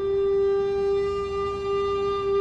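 A recorder holding one long, steady note.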